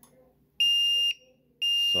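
Nexpow 12V 2000A jump starter beeping: two steady high-pitched beeps, each about half a second long and about a second apart. It is reacting to a load on its output, which it does not like.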